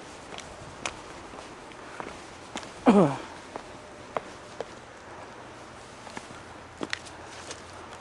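Footsteps going down rough stone steps: irregular taps and scuffs of shoes on rock. About three seconds in there is a short vocal sound from the walker, falling in pitch.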